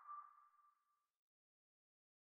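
Near silence: the faint, fading ring of the outro music's last note dies away about a second in, then silence.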